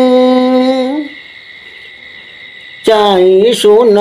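Tày phong slư folk singing: a voice holds one long note that ends about a second in. A steady high whine carries on alone through the pause, and the singing comes back near the end on a lower note.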